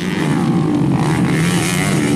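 Racing motorcycle engine running hard at high revs as the bike takes a dirt jump and rides on.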